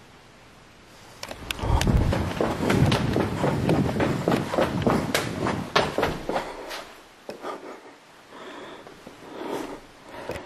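Quick, heavy footsteps on a hard floor, hurrying along a hallway, loud and irregular, easing off about seven seconds in as the walker slows at a doorway.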